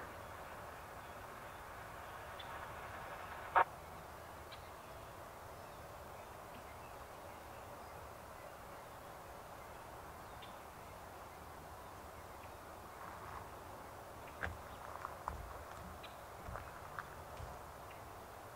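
Faint, steady rolling noise of a distant freight train passing, with one sharp click about three and a half seconds in and a few faint short sounds near the end.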